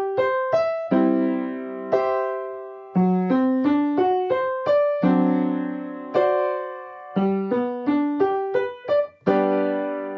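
Piano playing the primary chords of G major (I, IV and V7) in inversions, in three-four time. Each chord is played first as three separate notes, broken, and then as a held block chord that rings and fades. The last block chord sounds near the end and is still ringing at the close.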